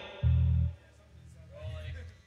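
A single low electric bass note, sounded about a quarter second in, held for half a second and then cut off.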